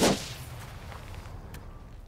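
A short whip-like whoosh sound effect for an animated graphic wipe: a sudden sweep at the very start that dies away within about half a second, then only a faint low background.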